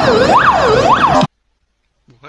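Fire engine siren wailing quickly up and down, a little under two rises and falls a second, then cutting off abruptly just over a second in.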